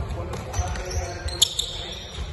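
Basketballs bouncing on a hardwood gym floor during a passing drill, with a sharp knock and a brief high squeak about one and a half seconds in.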